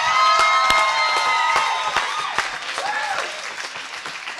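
Audience applauding, with a few cheering voices over the clapping; the applause slowly dies down.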